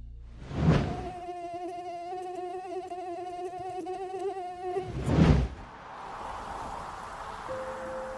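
High, wavering whine of mosquitoes in flight, lasting about three and a half seconds. It is framed by two rushing whoosh swells, one just before it and a louder one about five seconds in.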